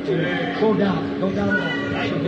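A person speaking, words that the recogniser did not catch, over a steady low hum from the old recording.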